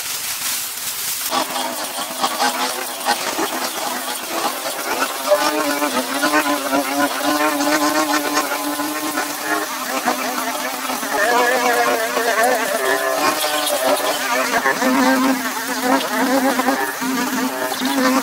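Two petrol brush cutters (string trimmers) running at high revs, a steady buzzing whine whose pitch wavers up and down as the cutting heads bite into the weeds. It starts about a second in.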